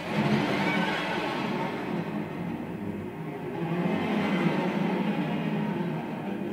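Live jazz ensemble music breaking in suddenly and loudly after a quiet sustained passage: a dense, full wash of band sound without clear single tones.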